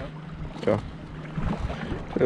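Wind noise on the microphone over a faint, steady low hum, with a brief voice sound less than a second in.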